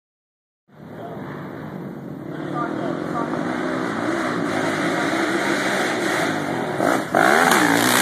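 Off-road motorcycle engine revving hard, growing steadily louder as it approaches and loudest as it passes close about seven seconds in, its pitch dipping and rising.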